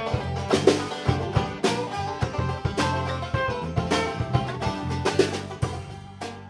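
A live band playing an instrumental passage with no vocals: electric guitar and banjo over electric bass and a drum kit keeping a steady beat.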